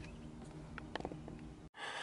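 Faint steady low hum with a few light clicks, cut off suddenly near the end.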